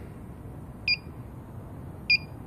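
Handheld electronic gas leak detector giving one short, high beep about a second in, part of its slow, steady beeping about every 1.2 seconds.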